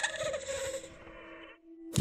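Eerie ambient background music of held, shimmering tones that fades out about one and a half seconds in, leaving a moment of near silence.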